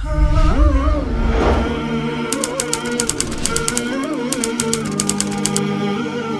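Channel outro jingle: it opens with a deep whoosh-thump, then wordless vocal music runs under a rapid typewriter-like clicking sound effect from about two seconds in until shortly before the end.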